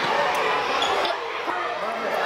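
Many children's voices chattering and calling out over one another, with a couple of short thumps, one about a second and a half in.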